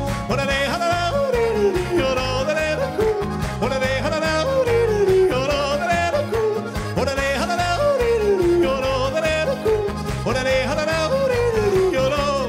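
Male singer yodeling into a microphone, leaping up in pitch and running down in repeated falling phrases, over live band accompaniment with guitar and a steady bass beat.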